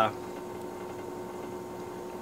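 Room tone: a steady, faint electrical hum with no other sounds.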